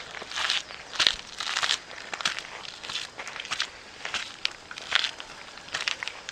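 Footsteps on loose gravel and rock, an uneven series of scuffs and crunches as people climb a rocky path.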